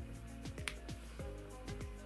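Quiet background music with a steady beat of short, downward-sliding drum hits under held notes.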